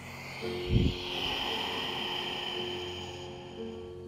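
A long breath out, close on a clip-on microphone, lasting about three and a half seconds, with a low thump on the microphone about a second in. Soft background music continues underneath.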